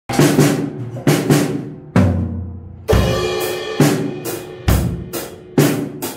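Acoustic drum kit played with sticks in a steady pattern: a loud accented stroke about once a second, with bass drum and snare under ringing cymbals.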